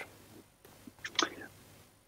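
A pause in a conversation: low room tone, with one faint, brief murmur from a voice about a second in.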